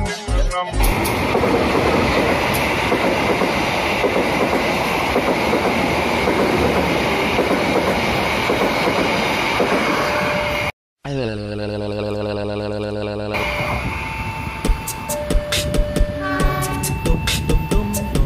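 A train passing close by for about ten seconds, a steady rushing rumble; after a sudden cut, a train horn sounds one steady note for about two seconds. Upbeat music with chiming notes follows.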